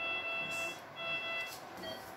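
Patient monitor alarm sounding during surgery: two long, steady electronic beeps about a second apart.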